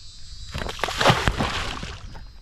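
A large freshly caught fish splashing and churning the water at the surface as it is released and bolts away. A run of splashes starts about half a second in and is loudest just after the middle.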